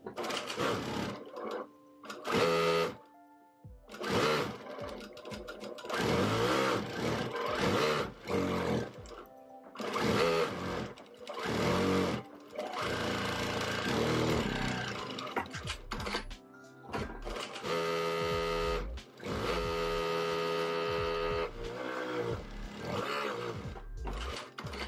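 Juki industrial lockstitch sewing machine stitching a strip of cotton fabric in a series of short runs, stopping and starting every second or few seconds. Its pitch rises and falls with each run.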